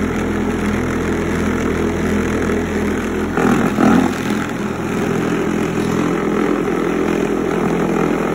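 Homemade pool ball polisher running: its electric motor hums steadily while it oscillates and spins the pool balls in a carpet-lined bucket. A brief louder rough noise comes about three and a half seconds in.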